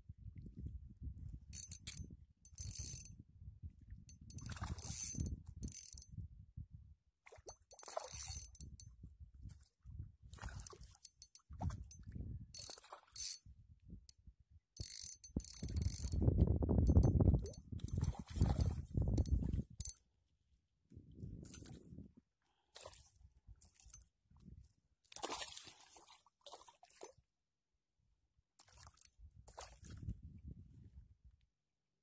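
Spinning reel being cranked in stop-start spells while a hooked fish is played on a bent ultralight rod; the reel's gears tick and click. Low rumbling handling noise close to the microphone comes and goes, loudest about halfway through.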